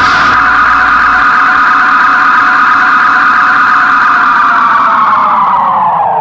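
A loud, steady droning chord in background music, held on several pitches. Near the end every note starts to sag downward in pitch and fade, like a tape slowing to a stop.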